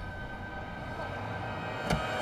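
Soft background score of held, sustained tones, with one short knock near the end.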